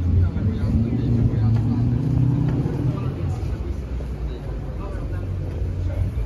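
A vehicle engine's low hum, strongest in the first half and fading after about three seconds, with passers-by talking.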